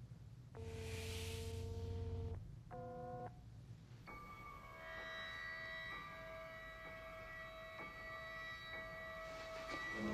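Electronic hum from a palm scanner reading a hand for about two seconds, with a hiss over it, then a short electronic beep. From about four seconds in, music comes in with long held notes.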